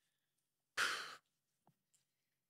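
A man's single short sigh, a breathy exhale about a second in, with near silence around it.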